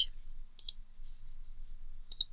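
Computer mouse clicking twice in quick succession, about half a second in.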